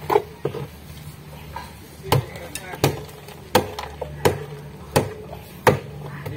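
A hammer knocking on wooden concrete formwork to strip it loose. There is one sharp blow at the start, then, after a pause, six strikes about every 0.7 s.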